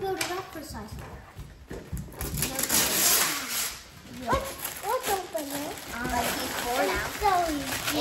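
Wrapping paper being torn and rustled off a gift box, loudest about two to three and a half seconds in, followed by indistinct voices.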